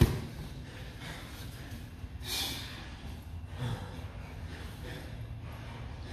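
Grapplers breathing hard through the nose and mouth during a jiu-jitsu roll on mats, with a loud short sound at the very start and a forceful hissing exhale about two seconds in.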